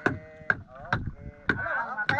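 Four sharp knocks on a wooden outrigger canoe, about half a second apart, as a gaffed sailfish is worked over the bow.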